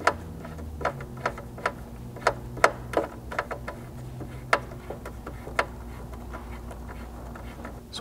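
Small metallic clicks from a 4 mm hex driver turning M6 button-head screws through a steel slider flange into clip nuts, coming irregularly about twice a second and stopping about five and a half seconds in, over a steady low hum.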